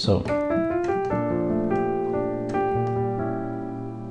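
Piano notes played one after another, low bass note arriving about a second in, building a spread diminished chord: a D-flat diminished triad over a B-flat bass, making a B-flat diminished seventh. The chord is then held and slowly fades.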